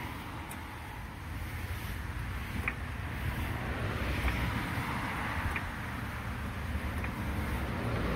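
Steady outdoor rumble of road traffic and wind on the microphone, swelling a little around the middle, with a few faint clicks as a low-profile hydraulic floor jack is pumped to lift the car.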